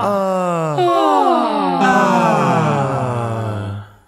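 Ensemble of high and low voices singing overlapping downward pitch glides, a new wave of falling slides about every second. The voices cut off together just before the end.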